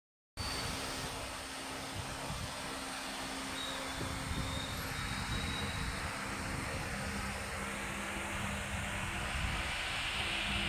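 Brushless electric hub motor of an 18 inch 48V/52V 1000W rear wheel spinning with no load, a steady drone with a faint low hum that holds without change.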